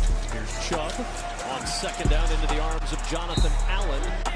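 Hip hop music with a deep bass beat and a voice over it.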